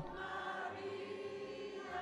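A group of people singing a German popular song together, their voices holding long, steady notes.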